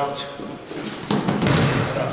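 A grappler thrown onto a padded grappling mat: a heavy thud of the body landing, with scuffling on the mat, starting about a second in and lasting about a second.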